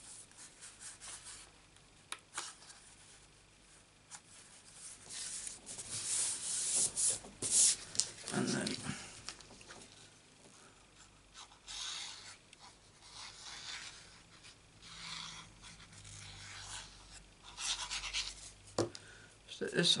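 Sheets of cardstock being handled by hand: paper rustling, rubbing and sliding on a craft mat in irregular bursts, loudest a little before the middle.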